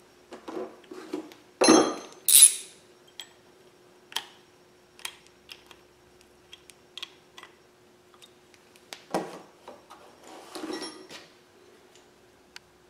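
Steel hand tools and small metal engine parts clinking and clattering against each other, with two loud clatters about two seconds in, scattered single ticks, and another cluster of clatter near the end.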